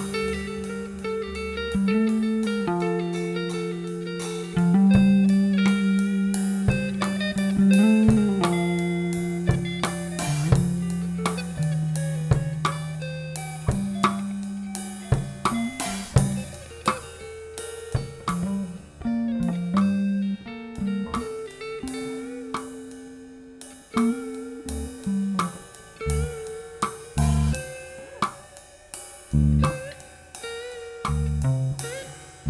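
Instrumental improvisation by a trio of drum kit, bass and guitar: held bass notes and guitar lines over steady drum hits. It thins out to a quieter passage after the middle, then heavier drum strikes come in near the end.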